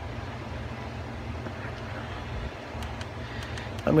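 Steady low background rumble with no distinct event, and a few faint ticks near the end.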